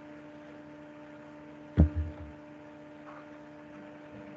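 Steady electrical hum with a few fixed tones, broken a little under two seconds in by a sudden low thump and two quicker, weaker knocks after it.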